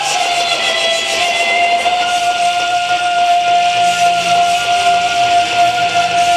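Loud pop-rock music through a stage PA: a singer holds one long, steady high note over the backing track, beginning with a slight upward slide.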